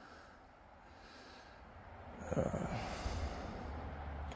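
Faint steady hiss for about two seconds, then a man snorts out a breath and says a hesitant "uh", followed by louder breathing with a low rumble against the microphone.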